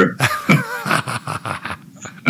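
Two men laughing: a run of short, broken bursts of laughter.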